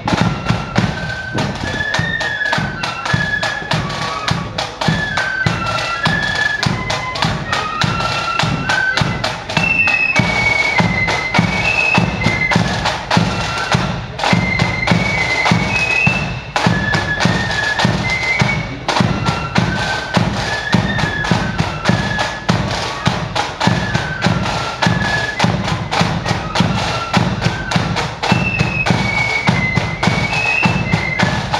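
Flute band playing a march: a high flute melody over rapid snare drumming and a steady bass drum beat.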